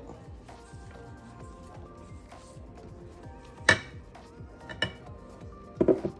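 Soft background music under a few sharp clinks of ceramic dishware. There is one loud clink about three and a half seconds in, another about a second later, and two or three more near the end, from the sauce bowl and the ceramic baking dish being handled.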